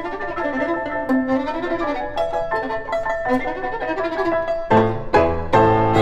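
Violin and grand piano playing classical chamber music: the violin carries a sustained melody with vibrato over a soft piano part, and about five seconds in the piano enters with loud, low, full chords.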